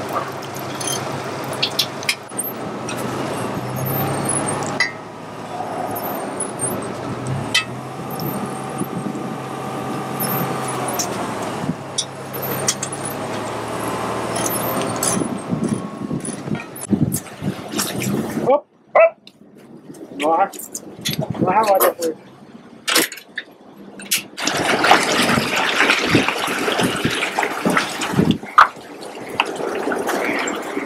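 A truck-mounted crane's engine runs steadily with a hydraulic whine that shifts in pitch, while it lifts a small yacht on slings. The sound cuts off abruptly about eighteen seconds in, followed by a few spoken words and then a rushing noise.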